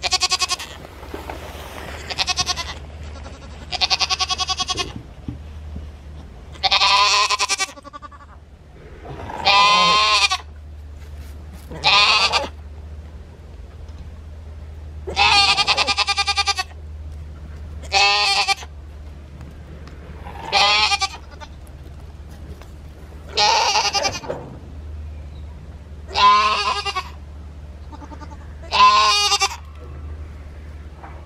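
Goats bleating loudly again and again: about a dozen separate wavering calls, each under a second or so long, a second or two apart.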